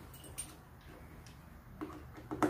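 Screwdriver working a screw in a metal door latch faceplate: a few faint, scattered metal clicks and ticks.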